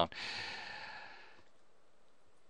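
A man's long breath out, a soft sigh lasting about a second and a half that fades away.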